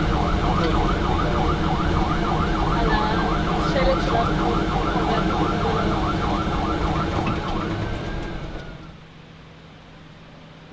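Magen David Adom ambulance siren, a fast warbling wail of about three sweeps a second, heard from inside the moving ambulance over the rumble of engine and road. It fades out near the end.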